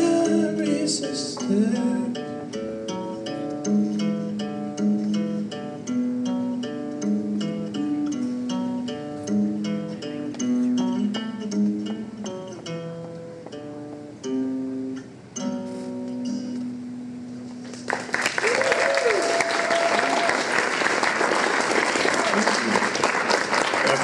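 Hollow-body electric guitar picked on its own in a slow melodic outro of single notes and chords, stopping about 17 seconds in. Then audience applause breaks out and carries on, with a voice calling out over it.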